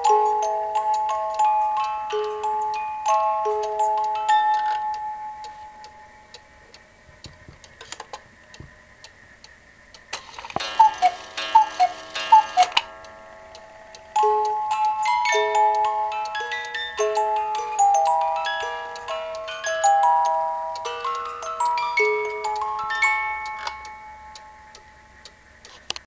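Black Forest cuckoo clock's music box plinking a melody while the clock ticks; the tune winds down after about six seconds. About halfway through the cuckoo calls several times, two falling notes each, then the music box starts the melody again at once and slowly fades near the end.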